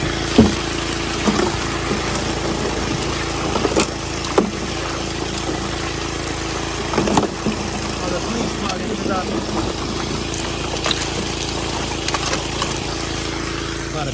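The small gas engine of a high banker's water pump runs steadily under water rushing through the metal sluice box. Scattered knocks of rocks and gravel come as a bucket of creek material is dumped into the hopper.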